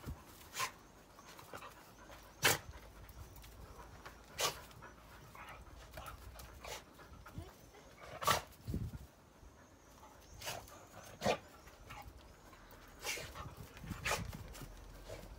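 Dogs panting, with a sharp click every second or two.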